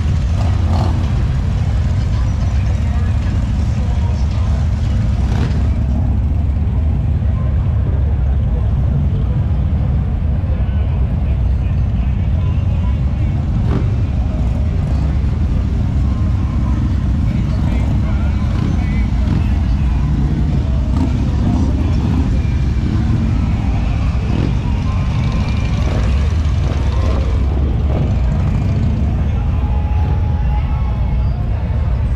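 Motorcycle engines running steadily with a deep, pulsing rumble, mixed with indistinct voices.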